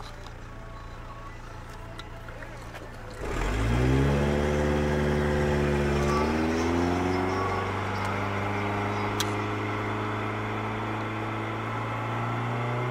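A car engine heard from inside the cabin, idling low, then about three seconds in pulling away and rising in pitch. The pitch drops back at two gear shifts, then holds a steady cruise.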